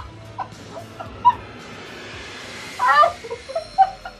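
A man laughing hard, breathless, coming out as short high-pitched squeaks and wheezes: one squeak about a second in and a longer wavering burst near the three-second mark, with soundtrack music faint underneath.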